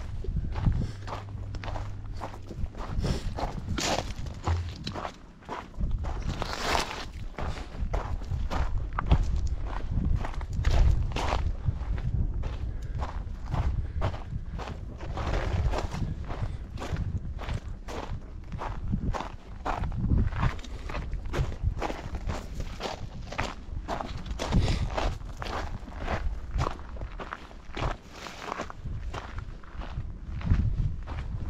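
A hiker's footsteps on a gravelly dirt trail at a steady walking pace, about two steps a second.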